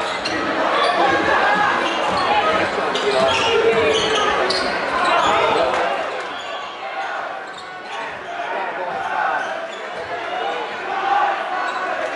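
Basketball dribbled on a hardwood gym floor during play, amid crowd chatter and shouts in the gym.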